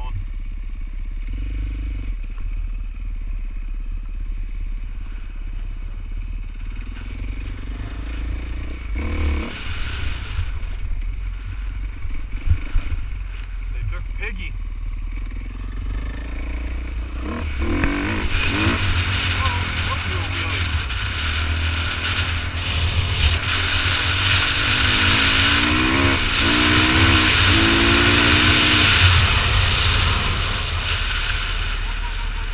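Dirt bike engine running on a gravel trail, heard from the bike over low wind buffeting on the microphone, with a few sharp knocks about halfway through. In the second half the wind rush grows louder as speed builds, and near the end the engine note rises several times in quick succession as the bike pulls up through the gears.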